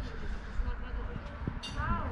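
Outdoor background noise: a steady low rumble with a few faint clicks, and a brief high rising chirp near the end.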